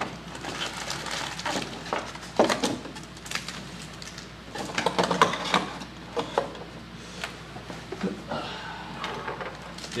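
A cardboard trading-card box being unwrapped and opened by hand, with scattered light clicks, rustles and crinkles of plastic wrap and cardboard.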